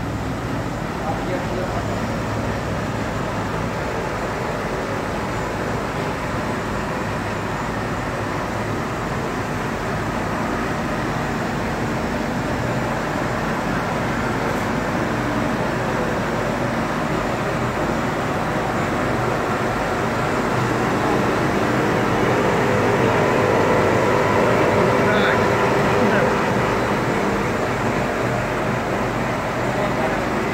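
MKS Sanjo P 25 SF label printing press running: steady, dense machine noise that swells a little about three-quarters of the way through.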